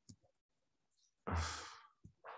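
A man's breathy exhale, a sigh blown close into the microphone, about a second and a half in, with a low breath-thump on the mic that fades within about half a second. A few faint clicks come just before it.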